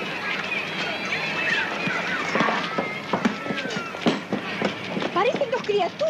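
Children's voices shouting and calling out while playing outdoors, with scattered sharp knocks among them.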